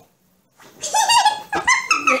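A woman's shrill, high-pitched squealing laugh, starting about half a second in after a short silence.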